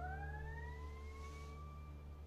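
A single ringing acoustic guitar note glides slowly upward in pitch by nearly an octave and fades away.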